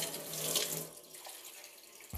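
Kitchen mixer tap turned on and running into a stainless steel sink, the water loudest in the first second and then settling to a steady flow.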